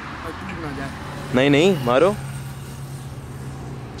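Steady road traffic noise with a low, even engine hum that strengthens about a second in, and a short vocal outburst cutting through briefly in the middle.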